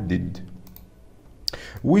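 A few light computer clicks, the sharpest about one and a half seconds in.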